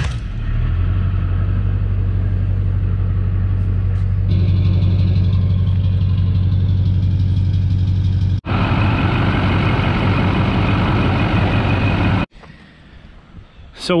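Duramax LB7 6.6-litre V8 turbodiesel idling steadily, with a low hum. About eight seconds in it turns harsher and hissier, as heard at the tailpipe. It cuts off about twelve seconds in.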